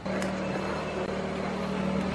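A motor vehicle engine running with a steady hum at one constant pitch.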